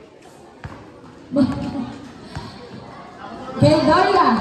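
A basketball bouncing a few times on a gym floor, with voices shouting in the hall. The loudest shout comes near the end.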